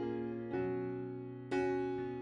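Background music: soft keyboard chords, each struck and left to fade, with a new chord about once a second.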